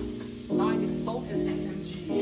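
Strips of green vegetable sizzling in a hot nonstick frying pan as a wooden spatula stirs and scrapes them, under louder background music of piano chords that change every half second or so.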